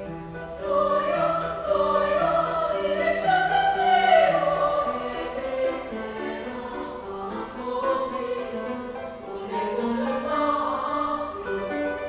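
Women's choir singing in several parts: a low part repeats a short rhythmic figure while the upper voices sing moving lines above it, loudest about four seconds in.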